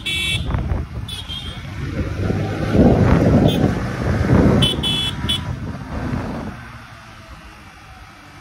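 Busy street traffic heard from a moving motorcycle: short, high-pitched vehicle horn beeps sound at the start, about a second in, and in a quick run of three around five seconds in. Under them runs an engine and road rumble that grows louder through the middle and falls away in the last couple of seconds.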